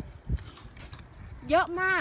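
A single dull, low thump about a third of a second in, then a woman speaking in Thai near the end.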